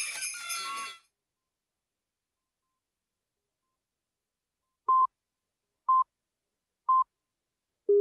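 Three short high beeps one second apart, then a lower beep a second later: the countdown tones of a videotape commercial reel ahead of the next spot's slate. Before them, the previous spot's closing sound fades out within the first second, followed by near silence.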